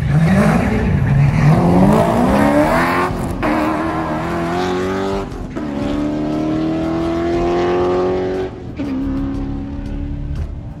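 Drag race cars accelerating hard down the strip, the engine note climbing in pitch and dropping back at each upshift: about three seconds in, again past five seconds, and near eight and a half seconds.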